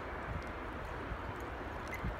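Muffled hoofbeats of a racehorse galloping past on the track, a few soft thuds over a steady low outdoor rumble.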